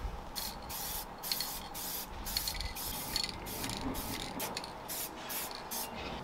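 Aerosol spray-paint can sprayed in a rapid series of short hisses, more than a dozen, as white paint is applied through a stencil onto a steel skip.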